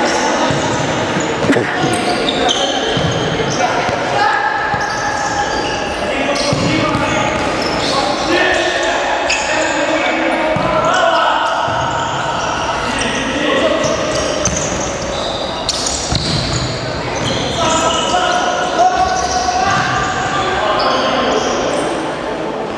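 Live futsal play in a large, echoing sports hall. The ball thuds as it is kicked and bounces on the wooden floor, shoes squeak briefly on the court, and players call out indistinctly throughout.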